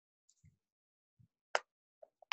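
Faint handling noises over a video call: two soft low thuds, then one sharp click about one and a half seconds in, with dead silence between.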